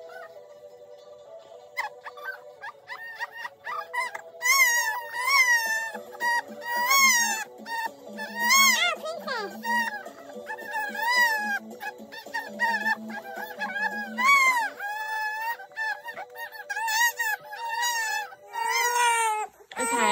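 A young baby crying in loud wails that rise and fall about once a second, starting a few seconds in, over background music with a steady melody and a bass line.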